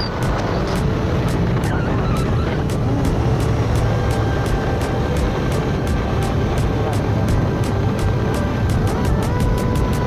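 KTM 250 motorcycle running along at road speed, its engine and the wind rush on the microphone making a steady noise.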